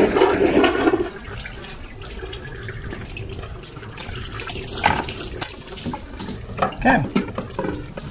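Engine coolant gushing and then running out as the water pump and thermostat housing is pulled off a 1.4L Ecotec engine, loudest in the first second and then a steadier trickle. A couple of sharp knocks of metal about five seconds in as the housing comes free.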